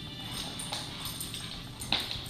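Dogs' claws clicking and scrabbling on a tile floor as two dogs play-wrestle, over steady background music.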